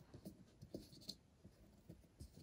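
Faint, scattered rustles and light scrapes of a braided cord being pushed under the strands wound around a wooden box and rubbing against the wood and fingers.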